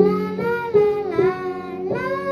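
A young girl singing a melodic line, accompanied by acoustic guitar holding steady low notes beneath her voice.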